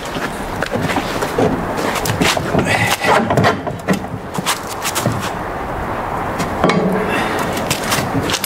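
Metal wing extension being worked loose and lifted off the end of a snow plow blade: irregular clanks, knocks and scrapes of metal on metal.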